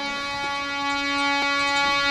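A single musical note held steady, rich in overtones: an instrumental drone accompanying devotional singing.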